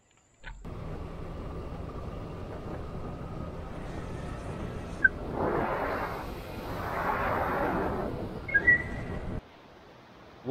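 Motorbike engine running while riding, with wind on the microphone: a steady low rumble that swells twice in the middle. A couple of short high chirps sound near the end.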